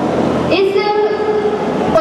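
A woman speaking into a microphone, drawing one syllable out in a long, steady-pitched tone for about a second before the words break off near the end.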